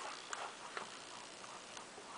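Whiteboard marker writing on a whiteboard: a few faint, short taps and scrapes as figures are written.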